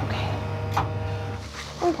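A single sharp click a little under a second in, as the X-ray table's cassette tray is pushed into place, over a steady low hum. A voice begins near the end.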